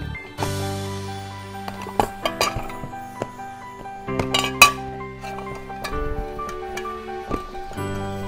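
Background music, with several sharp metal clinks from a kitchen scale's brass weighing pan and the steel worktable as dough pieces are weighed, the loudest about four and a half seconds in.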